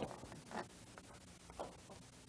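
Quiet room tone in a pause between spoken phrases, with two faint, brief small sounds about half a second and a second and a half in.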